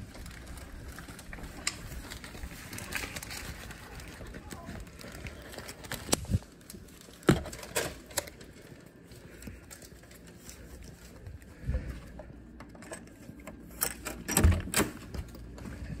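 Scattered clicks and knocks of a hotel keycard being handled and used at an electronic door lock. A louder clatter near the end comes from the lever handle and latch as the door opens.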